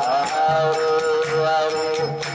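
Devotional chanting (kirtan): sung, wavering melody lines over hand cymbals struck in a steady beat of about three strokes a second, with low beats underneath.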